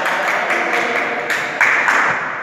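Hand clapping from a group of people, a dense patter of many claps that swells about one and a half seconds in.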